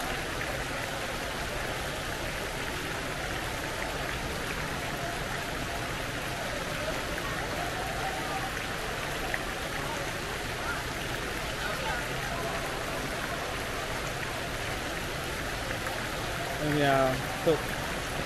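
A steady rush of falling water from an indoor water feature, with faint voices of other people in the background. A nearby voice comes in briefly near the end.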